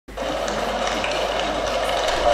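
Theatre audience cheering and applauding steadily as a stage performance is about to begin.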